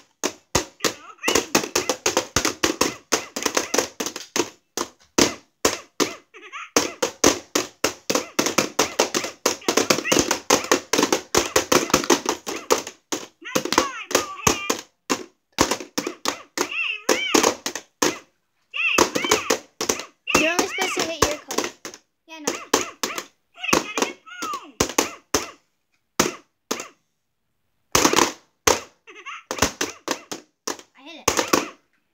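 Rapid, repeated tapping and slapping on the plastic light-up domes of an electronic reaction game, several hits a second, stopping briefly a few times, with children's voices calling out among the hits in the middle stretch.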